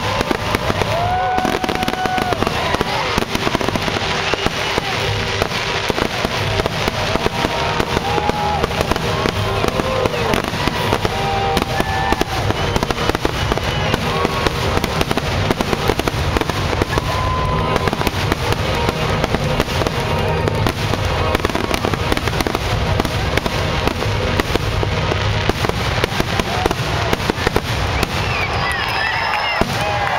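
Fireworks finale: a dense, continuous barrage of shell bursts and crackle with no gaps between them, with scattered short whistles and crowd voices over it. The barrage stops near the end as the crowd begins to cheer.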